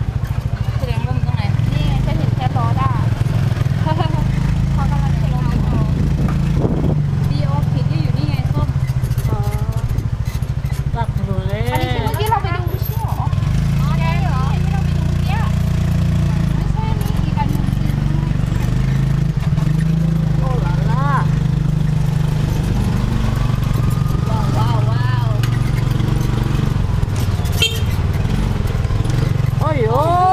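Small motor scooter engine running steadily as it pulls a passenger sidecar, its pitch stepping up and down with speed, with people talking over it now and then.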